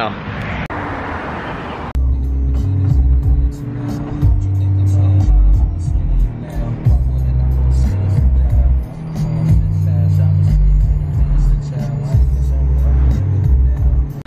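About two seconds of steady rushing noise, then music with a loud, deep bass line and a fast, regular high ticking beat.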